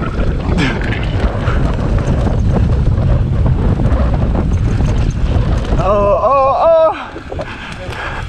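Mountain bike rolling fast down a dirt trail: a dense rumble of tyres on dirt and the bike's rattle, with wind buffeting the microphone. Near the end there is a brief, high-pitched cry.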